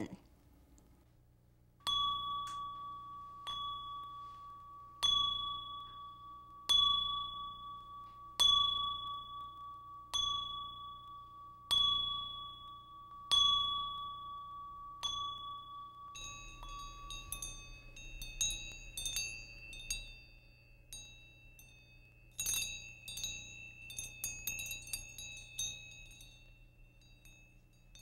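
Chimes ringing: a bell-like tone struck about nine times at an even pace, roughly every second and a half, each stroke ringing on. About halfway through it gives way to a denser, irregular tinkling of higher chimes, like wind chimes.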